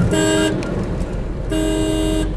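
Vehicle horn honked twice: a short blast near the start, then a longer one from about a second and a half in, over the steady low rumble of a car driving along the road.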